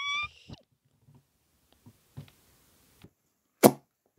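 The tail of a shouted voice fades out at the start. Then there are a few faint ticks and one sharp knock about three and a half seconds in.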